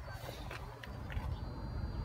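Low, steady outdoor background rumble with a few faint clicks and scuffs.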